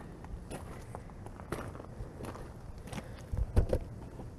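Footsteps on gravel, irregular steps with a few louder knocks near the end.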